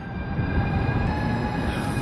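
Lastochka (Siemens Desiro RUS) electric train moving along a station platform: a steady low rumble of the train with a few faint steady whining tones above it.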